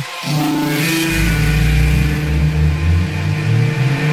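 Bass-boosted hardcore electronic dance track in a drumless passage: right at the start the low end drops out for a moment, then held synth notes ring over a steady low bass.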